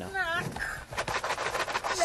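A brief high-pitched vocal cry, then rapid, irregular crinkling and rustling of a large plastic bag of cereal as it is handled and shaken.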